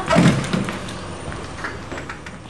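A thump just after the start, then a few lighter knocks and bumps of people moving away from a table, growing fainter.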